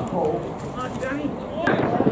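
Voices of football players calling out across the pitch over outdoor background noise, with a sharp knock near the end.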